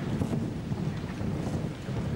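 Congregation settling into their seats after a hymn: a steady low rumble of shuffling, rustling and chair noise.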